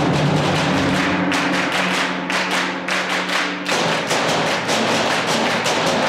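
Seventh-grade concert band playing: held low wind notes over a steady, evenly repeating percussion beat, the held notes changing a little past halfway.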